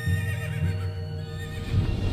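A horse whinnies over Western-style trailer music: one cry that rises, then wavers and fades over about a second, against low drum hits.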